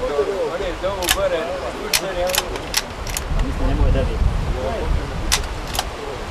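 Men talking briefly in the field, with about half a dozen sharp clicks from handled gear and a low rumble in the middle.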